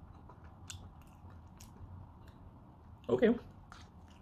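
Faint chewing of a mouthful of mashed sauerkraut, potato and meat, with a few light clicks. A short spoken "okay" comes near the end.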